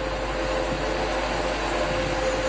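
Steady background noise with a faint steady hum running under it, unbroken throughout, of the kind a fan or air-conditioning unit gives.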